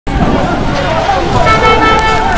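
Several voices over steady low rumbling noise, joined near the end by a sustained pitched tone.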